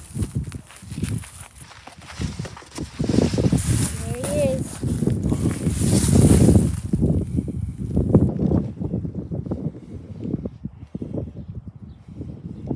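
Footsteps through dense weeds and grass with the rustle and knock of a handled cardboard box, coming as uneven thumps and rustles that are loudest in the middle and ease off near the end.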